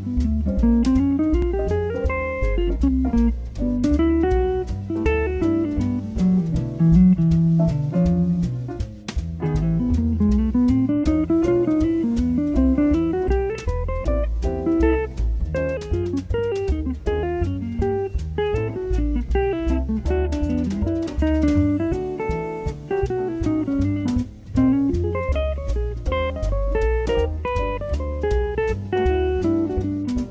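Electric guitar, a G&L ASAT Classic through a Supro Royal Reverb amp, playing a jazz etude in fast single-note lines that run up and down the neck. It plays over a backing track of bass and drums.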